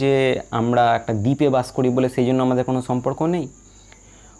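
A person talking, over a steady high-pitched hiss; the talking stops about half a second before the end.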